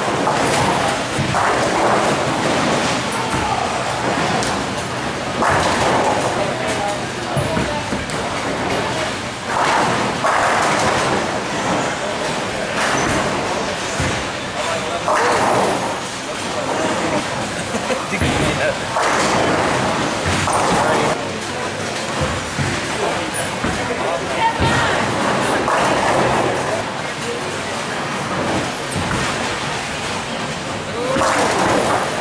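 Busy bowling-alley din: steady background chatter from the surrounding lanes, broken by occasional slams and thuds of balls and pins.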